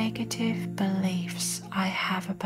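Soft, whispery woman's voice speaking over a steady ambient music pad of low held tones.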